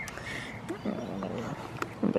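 A goat bleating once, briefly, about a second in.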